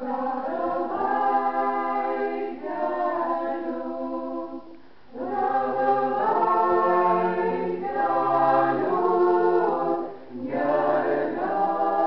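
A small choir of men and women singing a Lithuanian song in several parts, phrase by phrase, with short pauses for breath about five and ten seconds in.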